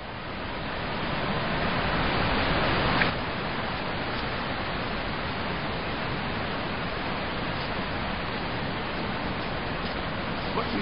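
Steady rush of a fast, rocky stream pouring over rapids. It rises in level over the first couple of seconds, then holds steady.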